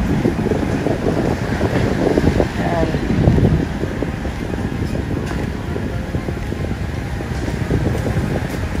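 Steady wind rumble on the microphone, with faint voices in the background during the first few seconds.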